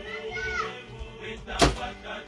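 Short high-pitched calls from young pigeons, with a single sharp knock about one and a half seconds in.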